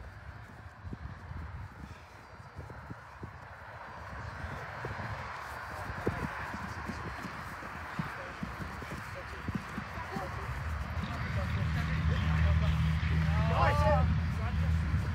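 Running footsteps on artificial turf, a soft, irregular patter of thuds, under faint distant shouting from players, with one clearer call near the end.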